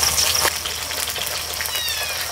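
Fish sizzling as it fries in hot oil in a wok. Near the end comes a short, high, falling cry.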